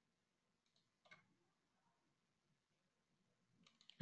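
Near silence with a few faint computer mouse clicks, one about a second in and a couple more near the end.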